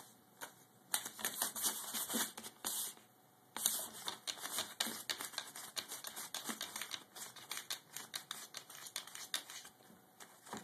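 Paper rustling and crinkling as a cat paws and nips at a sheet on a desk: quick irregular crackles and small taps, with two longer hissy rustles in the first half.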